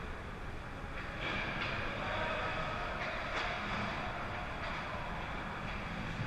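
Ice hockey rink sound from near the goal: a steady hiss of skates on the ice and arena hum, with brief skate scrapes or stick contacts about a second in and again around three and a half seconds.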